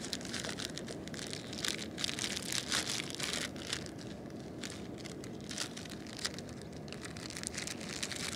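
Thin plastic bread bag crinkling and crackling as it is handled, thickest in the first half and then in scattered crackles, over a steady low background noise.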